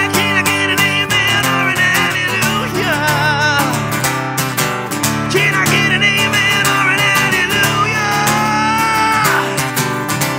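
A man singing long, held notes with vibrato over a steadily strummed acoustic guitar, played live.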